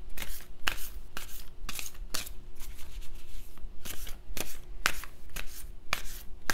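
A deck of oracle cards shuffled by hand in an overhand shuffle: a steady run of short papery card strokes, about two a second.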